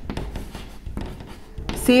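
Chalk writing on a blackboard: a run of faint short scratches and taps as letters are drawn. A woman's voice starts near the end.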